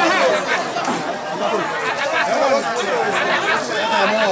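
Crowd of spectators chattering, many voices talking over one another at once.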